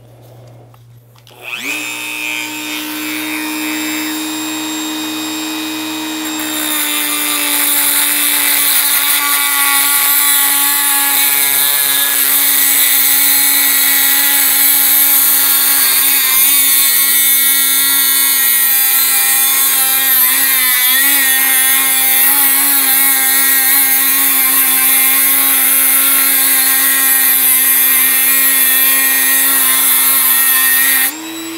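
Dremel rotary tool spinning up about a second and a half in, its motor whining steadily. About five seconds later its resin-bonded abrasive cut-off disc bites into a hardened steel file and a loud, hissing grind joins the whine, with the motor pitch dropping slightly under the load.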